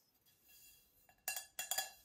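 Light knocks and clinks from handling a forged aluminium pan, a few quick taps with a short metallic ring starting a little past a second in.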